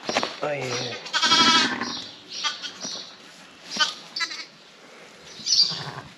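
A lamb bleating once, a loud quavering call about a second in, with short clicks and straw rustling around it.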